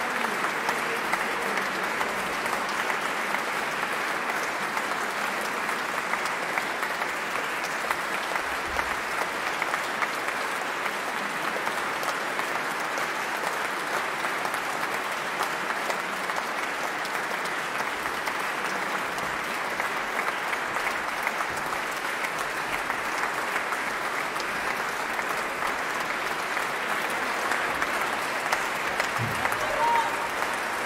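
Sustained applause from a concert audience, many hands clapping at a steady, even level.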